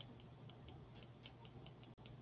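Near silence with faint, irregularly spaced light ticks, about a dozen: a stylus tapping on a tablet screen during handwriting.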